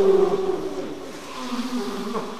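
Buzzing, droning sound design of several wavering pitched tones layered together, loudest at the start and thinning out, with a lower tone coming in about halfway through.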